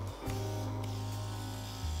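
Cordless pore vacuum with a small suction head pressed to the nose, its little motor running with a steady buzz. The pitch dips briefly near the end.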